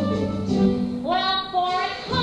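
Musical theatre song in a live stage recording: a woman's voice singing sustained notes over instrumental accompaniment, sliding up into a new held note about a second in.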